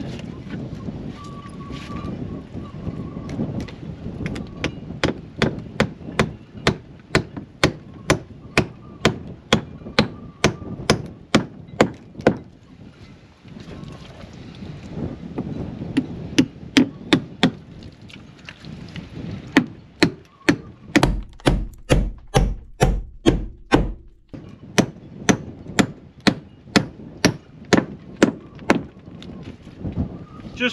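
Hammer driving nails through the planking of a wooden boat hull into a new frame: sharp, evenly spaced blows about two a second, with a couple of short breaks.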